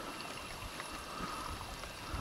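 Faint steady rush of a small stream, with low rumbles of wind on the microphone.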